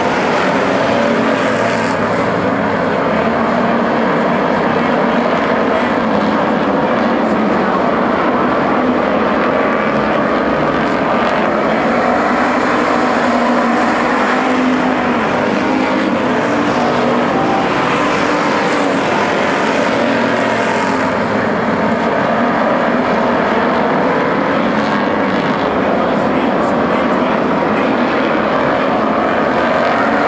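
A pack of WISSOTA Street Stock race cars running at racing speed, their V8 engines making a loud, continuous drone. It swells and fades several times as cars pass close by.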